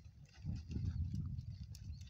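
Goats milling and feeding around tubs in a dirt pen: scuffing hooves and small scattered knocks over a low rumble.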